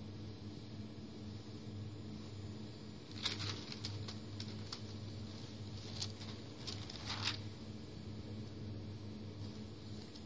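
Paper rustling in several short bursts as the pages of a sample book of printed labels are handled and turned, over a steady low hum.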